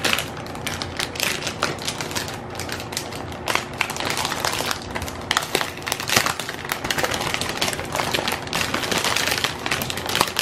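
Thin clear plastic bag crinkling and crackling continuously as hands grip and turn the speaker wrapped inside it, a dense run of irregular small crackles.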